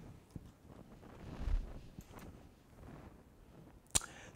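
Quiet room tone with a soft low thump about a second and a half in and a single sharp click just before the end.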